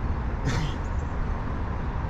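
Steady low rumble of city traffic, with a short breathy sound about half a second in.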